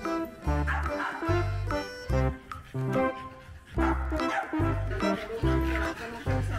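Background music with a steady bass beat, with French bulldogs barking over it.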